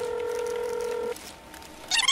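Telephone ringing tone heard on the line of a call just dialled: one steady tone that stops just over a second in, followed by faint line hiss.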